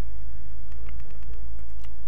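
Steady low rumble with a hum, and a few faint ticks.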